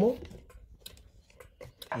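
Lever microswitch on a homemade bag heat sealer clicking as the hinged sealing arm is lowered onto its lever: a few faint clicks, the sharpest near the end.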